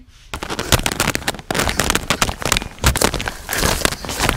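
Footsteps crunching through dry twigs and forest-floor litter: a dense, irregular run of cracks and snaps that starts suddenly a moment in.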